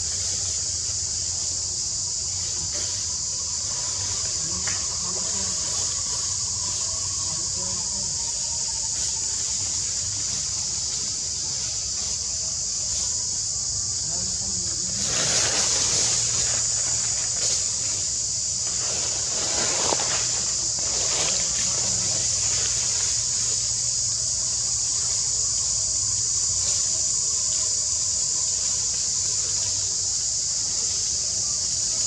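A steady, high-pitched drone of forest insects. Brief louder noisy bursts come about halfway through and again a few seconds later.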